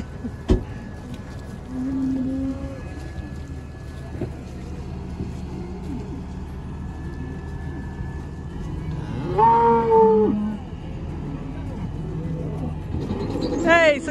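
Dairy cows mooing, with one long, loud moo about nine seconds in, over the steady low hum of a tractor engine running.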